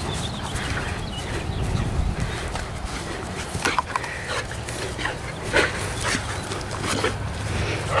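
A dog making short vocal sounds during play with a ball, about half a dozen brief ones in the second half, over a steady low rumble.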